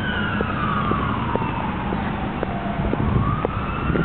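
Emergency vehicle siren in a slow wail: one long tone falls in pitch for about three seconds, then begins to rise again.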